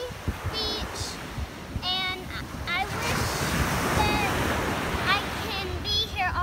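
Ocean surf breaking and washing up the beach, swelling to its loudest in the middle, with wind buffeting the microphone.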